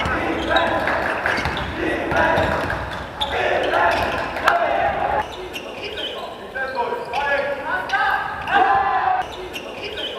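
Basketball game play in an echoing sports hall: a ball bouncing on the court floor amid players' calls and short squeaks.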